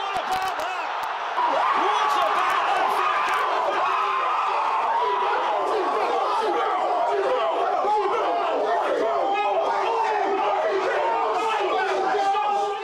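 A group of young men shouting and cheering over one another, loud and excited, from about a second in. A few sharp knocks come near the start.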